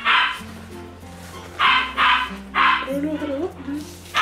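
Dog barking, about four short barks in a row, over background music with steady low notes.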